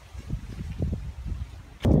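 Wind buffeting a phone microphone in uneven low rumbling gusts, with a louder burst near the end.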